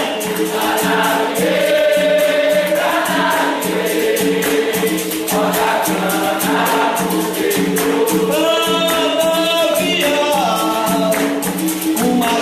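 Capoeira song in São Bento rhythm: a group sings in chorus over berimbau and pandeiro accompaniment, with a fast, even percussive beat.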